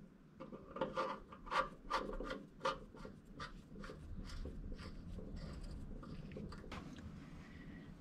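Faint, irregular clicks and scrapes of a hand-turned socket wrench threading the oil drain plug back into the underside of a Briggs & Stratton 450 series lawn mower engine. The clicks die away after about three and a half seconds.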